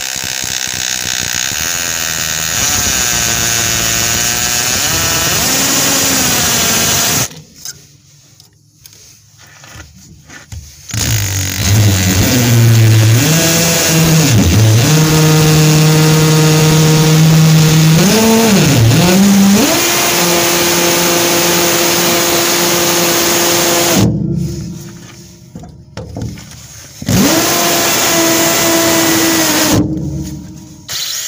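Cordless drill drilling out an old aluminium pop rivet, its motor whining in three runs with short pauses about 7 s and 24 s in. The pitch dips briefly a couple of times as the bit bites into the rivet.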